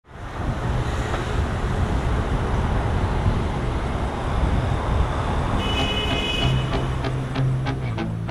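A steady low rumbling noise, then a brief high electronic tone about five and a half seconds in. Near the end the song's intro starts: a low bass note under plucked notes in an even quick rhythm.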